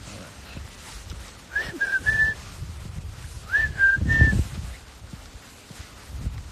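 A person whistling a short three-note call twice, each time a quick upward slide followed by two held notes. A low rumble of handling noise on a handheld phone's microphone runs underneath and is loudest during the second call.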